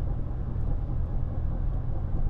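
Steady low rumble of a car driving, heard inside the cabin: road and engine noise.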